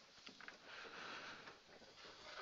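Hand-held eraser wiping a whiteboard: a faint rubbing swish lasting under a second near the middle, after a couple of light taps.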